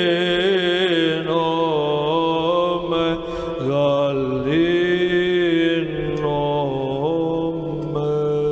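Orthodox church chant: voices singing long held notes that glide slowly from pitch to pitch.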